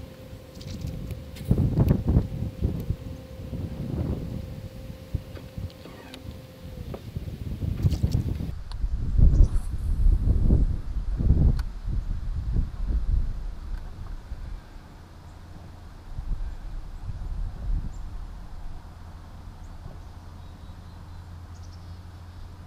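Wind buffeting the microphone in uneven low gusts, loudest in the middle. A low steady hum joins in during the second half.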